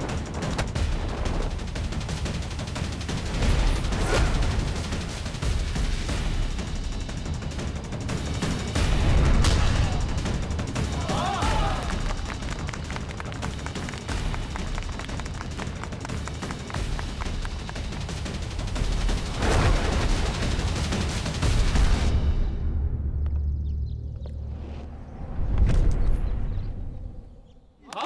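Dramatic action film score with heavy bass and percussion, cut with repeated sharp punch and impact sound effects. The music drops away suddenly about four seconds before the end, and a loud thud follows at the very end.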